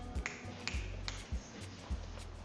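Background music with a low bass beat and sharp clicks over it.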